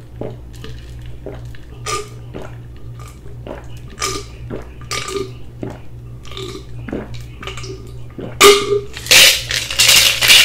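A person gulping juice down from a tumbler in one long drink, one or two swallows a second, then louder, noisier mouth and breath sounds in the last two seconds as the cup comes down.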